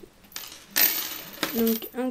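Gold-coloured metal chain necklace jingling as it is handled, a short burst of clinking about a second in, followed by a brief sound of voice.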